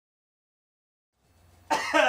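Silence for just over a second, then a faint hum, and near the end a man's short, loud vocal sound that falls in pitch, like a cough or grunt.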